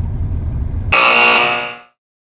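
Game-show 'fail' buzzer sound effect, a loud harsh buzz about a second in that lasts under a second and then fades out, marking the challenge timer running out. Before it, a low steady rumble of the moving bus.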